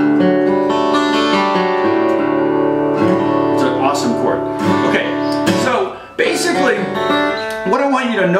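Lowden F-22 acoustic guitar in DADGAD tuning played on a D4 chord (D, F sharp, G, A), with the F sharp and G ringing out against each other. The chord rings on and is re-struck a few times, cuts off about six seconds in, and is struck again.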